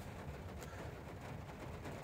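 Faint, steady low background noise inside a car cabin, with no distinct events.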